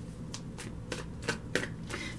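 A tarot deck being shuffled in the hands: a quick, irregular run of short card slaps and flicks, about six in two seconds.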